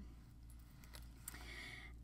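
Near silence with faint rustling of paper being handled and pressed down, a little stronger in the second half.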